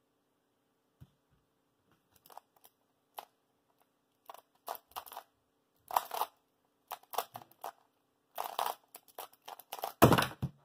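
Cyclone Boys magnetic skewb being turned by hand, its plastic pieces clicking and clacking in short quick clusters of turns with brief pauses between them.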